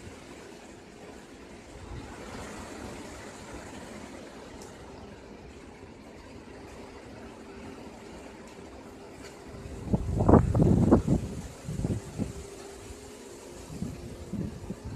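Hurricane wind rushing steadily through trees, with a strong gust buffeting the microphone in several loud blasts about ten seconds in.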